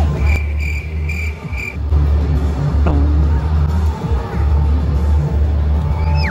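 Loud music with a heavy bass line, with a run of four short high beeps in the first two seconds.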